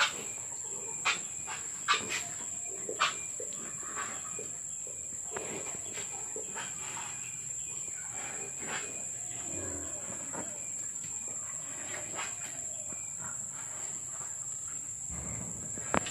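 A restless sow shifting about in a wooden-railed pen. There are a few sharp knocks in the first three seconds, then quiet shuffling with scattered faint clicks over a steady high-pitched whine.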